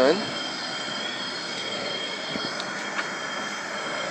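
Propane brewing burner running under the kettle: a steady rushing noise with faint steady high-pitched whistling tones over it, and one light tick about three seconds in.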